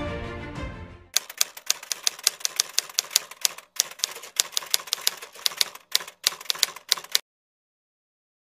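Typewriter sound effect: a run of quick, uneven key clicks for about six seconds, matching a caption typing out on screen, then a sudden cut to silence. Before it, music fades out in the first second.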